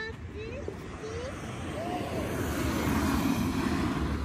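A minivan driving past on the road, its tyre and engine noise building to the loudest near the end as it passes close by.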